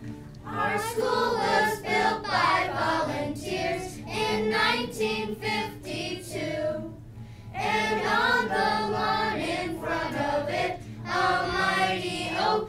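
A group of elementary-school children singing their school song together in phrases, with a short break about seven seconds in.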